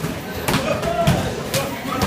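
Kicks and punches landing on handheld kick pads: a few sharp smacks at irregular intervals from a group training at once.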